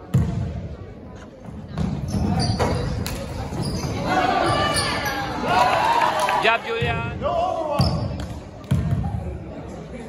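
A basketball bouncing on a hardwood gym floor, with thuds of the ball and play, and shouting voices in the middle.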